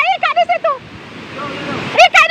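High-pitched voices shouting in quick, repeated cries for the first second and again right at the end, over the steady rush of the flooded river and wind on the microphone.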